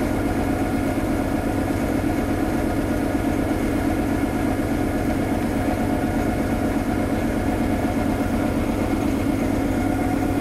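A small autonomous street sweeper's sweeping machinery running with a steady mechanical hum as it moves along at walking pace with its side brushes down on the road.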